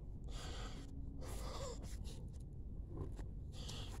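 A man breathing hard in several quiet, strained breaths while heaving a heavy sunken headstone up out of the mud.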